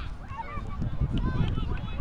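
Shouting voices calling across a rugby pitch, several short overlapping calls, over a low rumble on the microphone.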